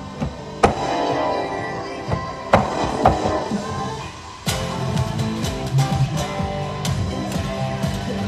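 Electric guitar strummed in chords: a few loud separate chord hits in the first half, then steadier, denser strumming from about four and a half seconds in.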